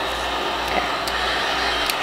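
Electric heat gun running steadily, its fan blowing hot air onto barcode stickers on a cardboard box to soften the adhesive so the labels peel off.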